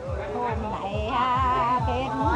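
A voice singing a Mường folk song, its held notes wavering in a wide vibrato, over a backing track with a steady low beat about three times a second.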